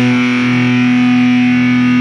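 Death metal music: a distorted electric guitar chord held and ringing out, with no drums under it.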